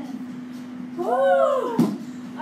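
A woman's high-pitched, drawn-out whine of exertion, rising then falling over just under a second, about a second in, with a knock at its end. A steady low hum runs underneath.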